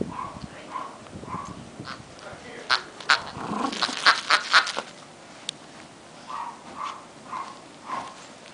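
Rat terrier playing rough with a plush mallard duck toy, shaking it hard in the middle: a cluster of sharp clicks and rustling. A few short sounds come about half a second apart near the start and again near the end.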